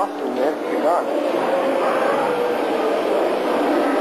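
Indistinct voices over a loud, steady background noise, with a few short rising and falling voice sounds in the first second.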